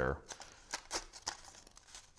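Paper flower petals crinkling and rustling in short, irregular crackles as a pencil is pressed into them to curl them up.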